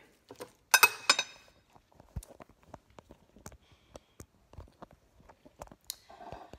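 Metal spoon clinking against a ceramic bowl about a second in, then faint scattered taps and rustles of Brussels sprouts being tossed in the bowl.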